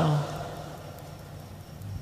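A man's voice trailing off at the end of a spoken phrase, then a pause of faint, steady background noise and low rumble.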